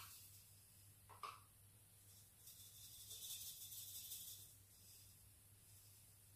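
Granulated sugar poured from a jug into a bowl on a kitchen scale: a faint hiss from about two and a half seconds in, lasting about two seconds, with a brief faint knock about a second in.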